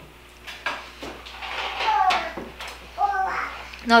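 A toddler's high-pitched wordless vocalizing: a longer call falling in pitch about halfway through and a shorter one about three seconds in.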